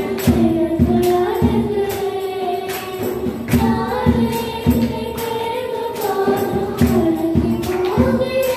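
Two girls singing a Tamil Christian worship song into microphones, a held melody line with vibrato, over accompaniment with a steady beat.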